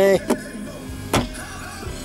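A sharp plastic click about a second in, the storage compartment lid in a Mitsubishi ASX's dash being shut, with a fainter click just before it.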